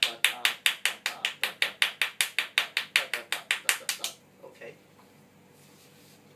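Steady hand clapping, about five claps a second, counting out the subdivided beats of the rhythm; it stops about four seconds in.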